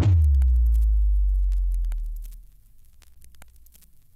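A single very deep bass tone or boom that drops a little in pitch as it starts, then rings out and fades away over about two and a half seconds, leaving only faint clicks.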